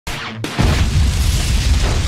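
An explosion sound effect with music: a quieter lead-in, then a loud boom with a deep rumble about half a second in that carries on.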